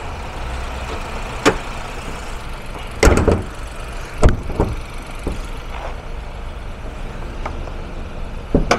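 Chevrolet Monza's hood dropped shut with a loud bang about three seconds in, followed a second later by a smaller knock as it is pressed down. A steady low engine hum runs underneath.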